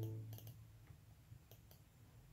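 The last sustained chord of a karaoke backing track dying away in the first half second, then near silence with a few faint clicks.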